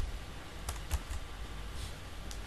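A handful of faint, sharp clicks over a steady low hum.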